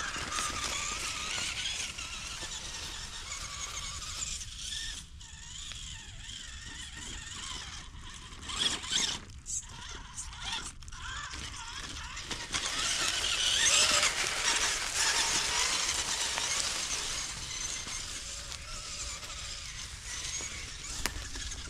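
Small RC crawler's electric motor and gears whining, rising and falling with the throttle as it climbs over a pile of logs, with a few sharp knocks and cracks of wood just before the middle. After the middle comes a louder stretch of dry leaves crunching and rustling.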